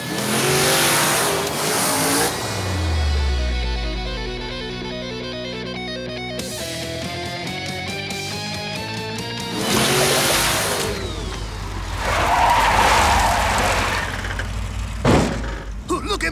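Cartoon monster-truck sound effects over background music: bursts of engine and rushing noise, then a single sharp impact near the end as the truck lands in the cake.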